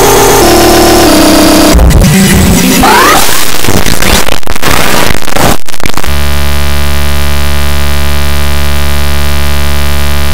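Loud, heavily distorted and clipped audio from an effects-processed cartoon soundtrack: a harsh jumble of noise with stepping tones and a brief rising glide, then about six seconds in it switches abruptly to a steady, harsh buzz.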